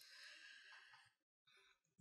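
Near silence: a faint breath in the first second, fading out, then room tone.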